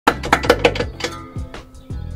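Music with a low bass line that changes note every half second or so, and a quick run of sharp percussive clicks in the first second.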